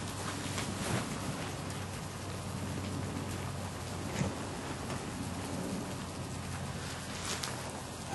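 Steady outdoor background hiss with a low hum, and a couple of faint knocks as the wooden-framed screen door of the fly cage is swung shut.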